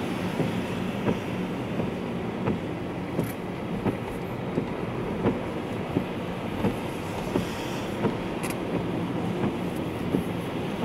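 Car cabin noise while driving on a wet road: a steady engine and tyre rumble, with a sharp tick about every 0.7 seconds.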